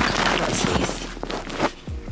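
Handling noise from the camera being picked up and moved: rustling and rubbing right on the microphone with small clicks, ending in a sharper knock near the end.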